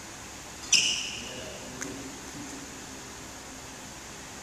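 Badminton racket striking a shuttlecock once with a sharp, ringing ping of the strings about three-quarters of a second in, followed about a second later by a much fainter click.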